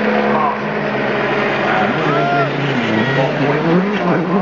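Rally car engine approaching: a steady engine note drops briefly about three seconds in, then climbs sharply as the car accelerates toward the passing point.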